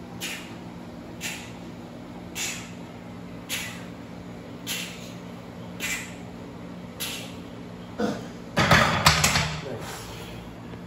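A lifter's sharp breaths on the bench press, about one a second, then a louder stretch of straining and grunting near the end. A steady low hum runs underneath.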